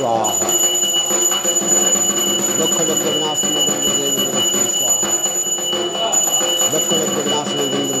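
A brass handbell rung without pause, a steady high ringing, over voices chanting mantras.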